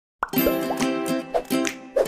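Upbeat intro jingle with bubbly popping sound effects over steady pitched notes and light percussion, starting after a brief silence.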